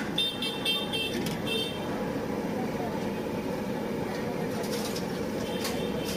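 Busy street-stall ambience: steady traffic noise and background voices, with a run of short, high-pitched beeps in the first second and a half and a few more near the end.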